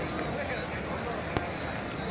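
A crowd of people talking, with many voices blending into a steady background hubbub. A single sharp click sounds just under a second and a half in.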